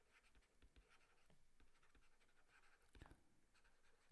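Near silence, with faint ticks and light scratching of a stylus writing on a tablet, a little louder about three seconds in.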